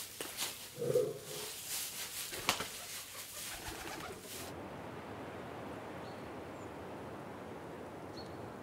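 Straw rustling with soft clicks as a lion walks through hay bedding, a pigeon giving one short coo about a second in and fluttering up. This cuts off sharply about halfway through, leaving faint steady outdoor background with a couple of tiny bird chirps.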